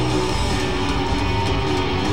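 Live rock band playing an instrumental passage: electric guitar over bass and drums, at steady full volume.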